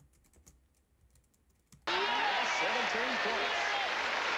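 Faint clicks of a computer keyboard and mouse over near silence, then about two seconds in a game-show clip starts up abruptly: a studio audience applauding with voices over it.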